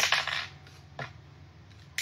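Handling noise: a brief rustle, then two light clicks about a second apart as a small object is handled.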